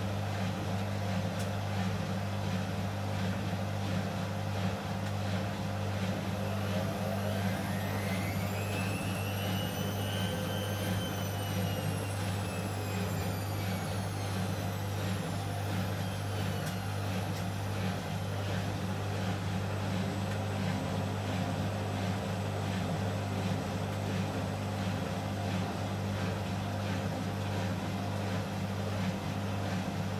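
Several Hotpoint front-loading washing machines running together on a spin-only cycle, their drums turning at low speed with a steady motor hum. About seven seconds in, one machine's motor whine rises in pitch, peaks, and falls away again by about sixteen seconds.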